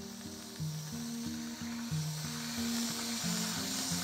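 Aerosol can of whipped cream spraying with a steady hiss, over background music with held low notes.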